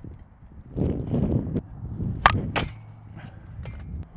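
Easton POP one-piece slowpitch softball bat striking a pitched ball: a sharp crack a little past two seconds in, then a second fainter crack right after, with a low rustling noise before it.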